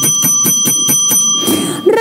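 Rapidly repeated bell-ring sound effect: a bright, high ringing struck about five times a second and held for nearly two seconds, ending in a short rush of noise. It works as a shopping-channel sting marking the special price just announced.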